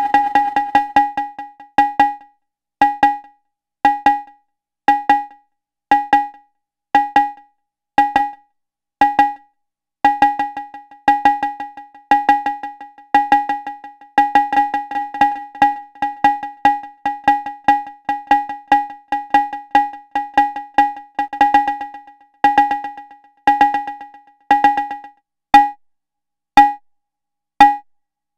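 A synthesized cowbell-like drum hit about once a second, fed through a digital delay. At first each hit trails a dense run of echoes, then the hits sound singly with short tails, and from about ten seconds in, trains of echoes fill the gaps between the hits as the delay's settings are turned.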